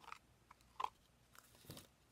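Faint, scattered clicks and rustles of small cardstock pieces being handled and set down on a paper countdown calendar.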